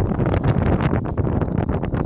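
Wind buffeting the microphone: a loud, uneven rumble.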